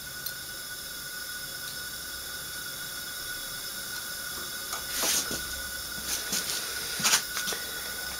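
Steady hiss of compressed air leaking out of a cylinder held at about 100 psi during a leak-down test on a 1974 Volkswagen air-cooled flat-four, a leak found to be mostly past the exhaust valves. A few brief handling noises come about five and seven seconds in.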